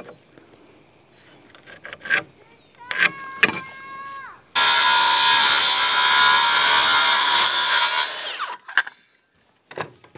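Handheld cordless circular saw: the motor briefly spins up with a whine and winds off, then cuts a trim board for about three and a half seconds before spinning down. A few knocks of the board being handled come just before.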